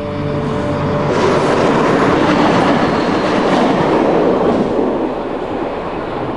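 Train passing close by: the rushing noise of wheels on rails swells about a second in, is loudest in the middle, and eases off toward the end.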